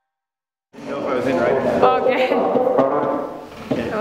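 Silence for almost a second, then people's voices start and run on, mixed with music.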